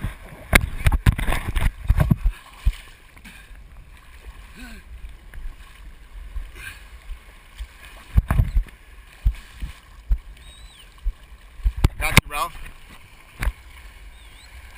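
Shallow sea water sloshing and splashing against a waterproof action camera held at the surface, with heavy thumps as small waves wash over the housing. The splashing is loudest in the first two seconds, again about eight seconds in and about twelve seconds in.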